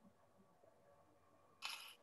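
Near silence with a faint steady hum, broken by one brief burst of noise, about a third of a second long, about a second and a half in.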